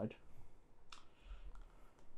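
A faint single click about a second in, over quiet room tone.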